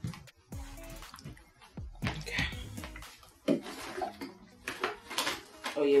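Handling noises of someone searching through things: scattered knocks, clicks and rustles, ending with a tote bag being rummaged through.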